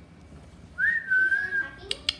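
A person whistling one high note, held for about a second: it jumps up at the start, dips slightly and holds steady. A sharp tap comes right at the end.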